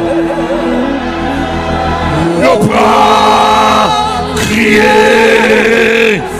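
Church choir singing a gospel worship song, the voices holding long, wavering notes.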